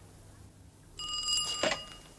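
A telephone ringing, starting about a second in and stopping at the end as it is answered, with a single knock partway through.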